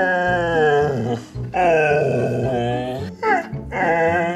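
A husky "talking": a run of four drawn-out, howl-like yowls and grumbles that slide up and down in pitch, the second the longest, over background music.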